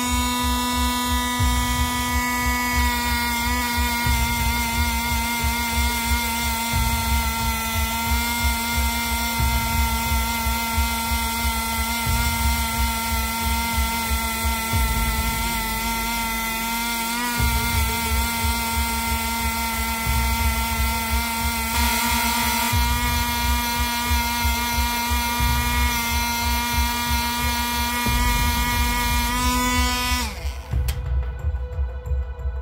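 Small cordless rotary tool running at steady speed with a nylon bristle wheel brush rubbing on a copper penny: a high, even motor whine that dips briefly midway and cuts off at the end.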